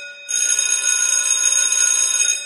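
A bell sound effect ringing steadily and high with a fast trill. It breaks off right at the start and rings again about a quarter second later.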